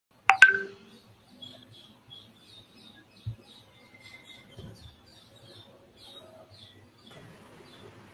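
Two quick, loud electronic tones right at the start, then faint high chirping repeating about three times a second.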